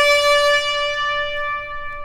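A trumpet holding one long, steady note that slowly fades away.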